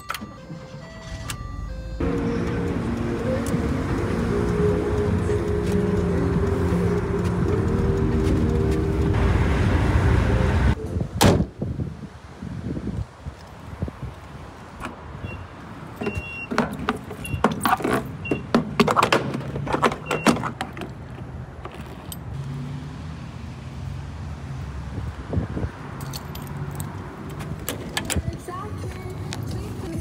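Volkswagen Vanagon engine started on the key: a few key clicks, then the engine catches about two seconds in and runs steadily for several seconds before cutting off suddenly. Later come a run of sharp clicks and knocks from keys and door handles over a quieter steady running sound.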